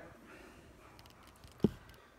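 Faint handling noise with a few light clicks, then a single sharp knock a little past halfway, as the reel and camera are moved about by hand.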